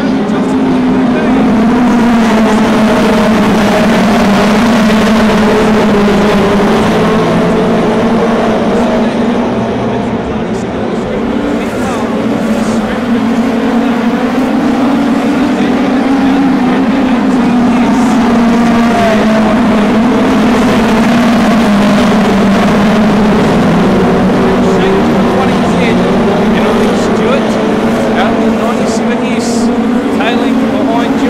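A pack of winged minisprint race cars running flat out around a dirt oval, many engines overlapping in a continuous, wavering drone that swells and fades as the field passes, with a brief lull about ten seconds in.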